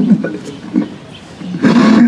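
A man's voice chanting a mournful elegy through a microphone and loudspeaker: a line trails off, there is a lull of about a second, and his voice comes back loud and harsh near the end as the next line begins.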